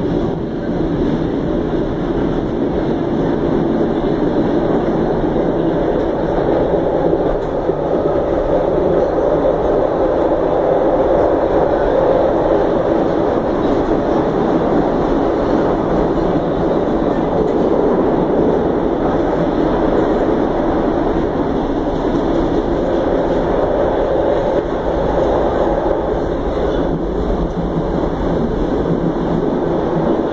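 Buenos Aires Subte Line C subway train heard from inside the carriage, running through the tunnel with a loud, steady rumble of wheels on rails.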